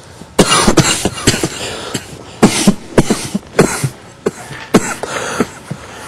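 A person coughing hard, a run of loud coughs in irregular bursts starting about half a second in.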